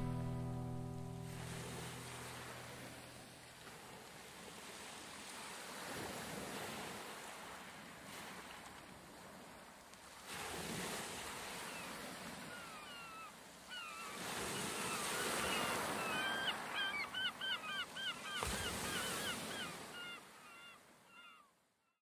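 The last held notes of the music die away, then small sea waves wash in with a soft surge every few seconds. Over the second half a bird calls in short hooked notes, several a second.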